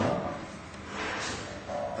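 Bowling alley room noise: a broad, even din in a large hall that swells a little about a second in, with faint voices.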